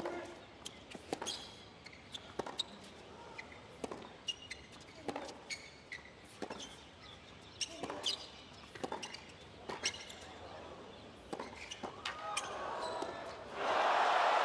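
Tennis rally on a hard court: the sharp pop of racket strikes on the ball and its bounces on the court, about one every second or so. Crowd noise swells near the end as the point finishes.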